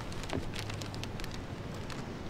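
Steady outdoor background noise with many light, scattered crackles and ticks over a low hum.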